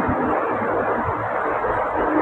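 Steady background noise: an even hiss with a low rumble beneath it, unchanging throughout.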